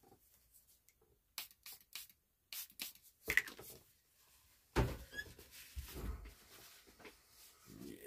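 A trigger spray bottle spritzing cleaner onto the radio cabinet: a quick series of short squirts over about two seconds. Near the end comes a faint rub of a cloth wiping the cabinet down.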